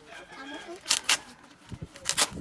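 Sand and gravel shifting against a woven plastic sack as it is filled: two short gritty rushes close together about a second in.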